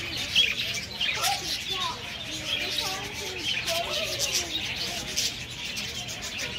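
A flock of budgerigars chattering: many short chirps and warbling calls overlapping continuously.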